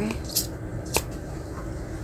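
A few short, light clicks of a plastic spoon against a plastic takeaway food tray, the sharpest about a second in.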